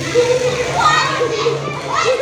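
Children's voices shouting and calling out while they play.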